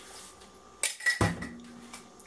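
Two sharp metal clinks about a second in, a kitchen utensil striking a pot or bowl, with a short ring after them.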